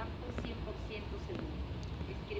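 Faint, indistinct voices over a steady low rumble of outdoor background noise.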